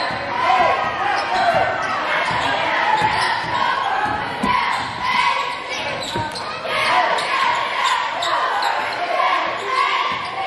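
Basketball being dribbled on a hardwood gym floor, a run of short bounces, under steady voices from players and spectators echoing in a large gym.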